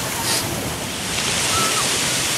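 Ocean surf washing onto the beach, swelling about a second in.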